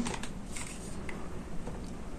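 Faint, scattered light clicks and handling noises as a plastic hot glue gun is picked up and brought to the pompoms.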